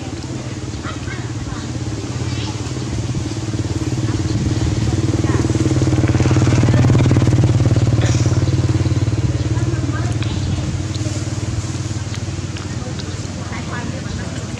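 A steady low motor-vehicle engine hum that builds to its loudest about halfway through and then fades, as a vehicle passing by.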